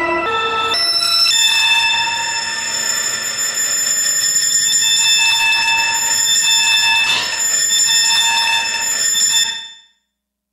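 Ciat-Lonbarde Tetrax analog synthesizer played through a Chase Bliss Mood Mk II pedal. A few quick stepped notes open into a cluster of high, steady tones held for several seconds. The sound then fades out quickly to silence just before the end.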